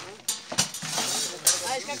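A few sharp snaps and clicks of dry brushwood being handled at a cooking fire, with voices in the background.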